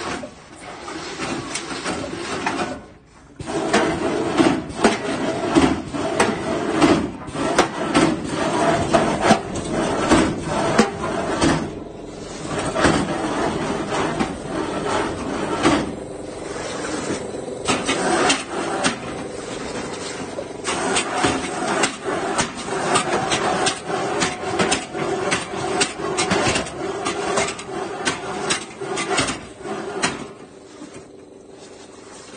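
Homemade steel robot suit's motors and metal joints working as it moves and swings its arm: a continuous rough grinding and rattling packed with small clicks and knocks, which drops out briefly about three seconds in.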